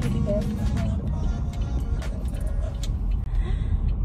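Steady low rumble of a car being driven, heard from inside the cabin, with music playing under it. The sound drops out for an instant about three seconds in.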